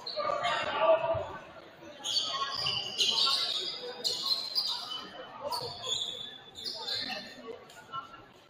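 A basketball being bounced on a hardwood gym floor during a free throw, with voices echoing in the gym.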